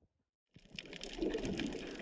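Silence for about half a second, then the faint hiss of underwater noise picked up by a submerged camera, fading in.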